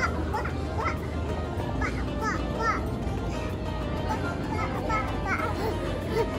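A toddler's voice: a string of short, high-pitched squeals and babbling cries while running, over steady background music.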